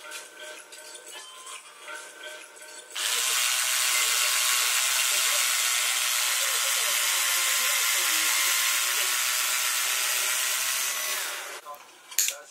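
Bosch cordless screwdriver running steadily for about eight seconds. It starts suddenly about three seconds in and cuts off near the end, as its bit works into a camera case.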